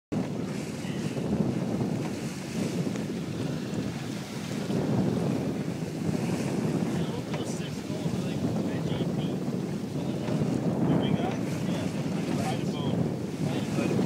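Wind buffeting the microphone on a sailboat under sail, with the wash of water along the hull; a steady, gusting rush.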